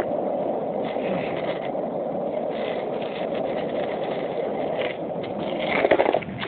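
Steady rolling rumble of skate wheels on pavement, with a few faint ticks.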